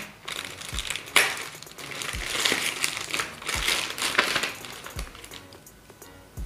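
Clear plastic packaging bag crinkling and rustling as it is handled and cut open with a folding knife, with a sharp click about a second in.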